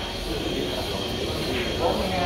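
Indistinct chatter of several people's voices in a reverberant room. The voices grow a little more distinct near the end.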